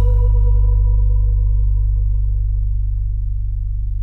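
A sustained musical drone: a deep bass tone held steady, with fainter steady high tones above it that slowly fade away.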